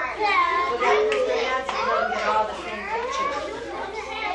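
A group of young children's high voices talking and calling out at once, overlapping so that no single speaker stands out.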